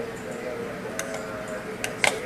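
Two sharp clicks, one about a second in and one near the end, over a steady hum.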